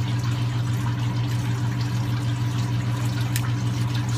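Steady hum of aquarium pumps with running water, unchanging throughout, and one small click near the end.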